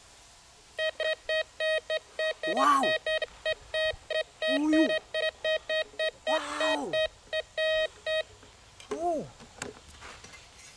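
Metal detector giving its target signal: short beeps at one steady pitch, about three a second, while the coil is swept over a buried metal object. The beeping stops about eight seconds in.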